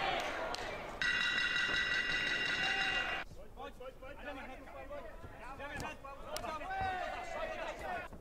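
Fight footage sound: voices over the arena, then a loud, steady high ringing tone of about two seconds that starts about a second in and cuts off abruptly. After that, quieter voices and arena sound with a few sharp knocks.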